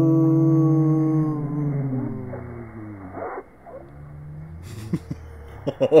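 A person's voice stretched out by slow-motion playback: a deep, drawn-out tone that slides down in pitch and fades away about three seconds in. A man laughs near the end.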